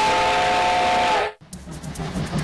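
Train horn sounding once: a chord of several steady tones over a loud hiss, cutting off sharply about a second and a quarter in. Rhythmic music starts just after.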